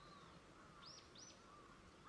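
Faint wild birdsong: two quick, high, thin call notes, each sliding downward, about a second in, over fainter, lower calls from birds further off.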